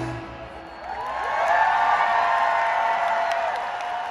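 Stadium rock concert at the close of a song: the band's full sound drops out, then a long high note rises in and is held for about three seconds before falling away, over a cheering crowd with scattered claps.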